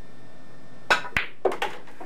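Pool cue tip striking the cue ball about a second in, then a sharp click as the cue ball hits the object ball, followed by a couple of softer knocks of balls moving on the table.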